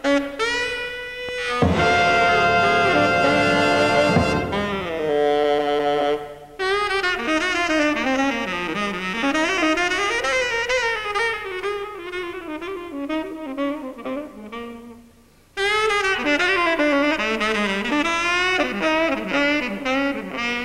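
Tenor saxophone playing a slow jazz ballad solo, long phrases with vibrato. About two seconds in, a big-band brass chord swells in under it for a couple of seconds. Later a phrase tails away almost to nothing before the horn comes back in strongly.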